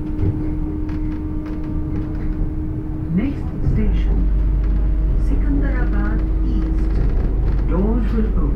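Metro train running on its elevated line, heard from inside the carriage: a steady running rumble with a steady hum over it. The rumble grows louder about four seconds in, and the hum fades near the end.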